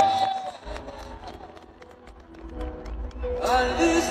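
A man singing into a microphone through a concert sound system, with low musical backing: a held note ends about half a second in, the voice drops away for a couple of seconds while the backing carries on, and the singing comes back strongly near the end.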